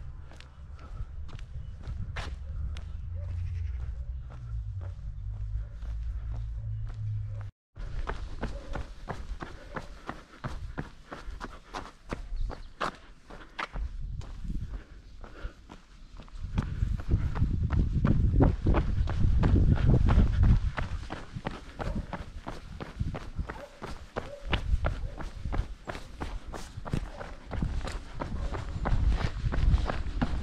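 A runner's footsteps on pavement, an even stride of a few steps a second, with wind buffeting the microphone, heaviest in the middle.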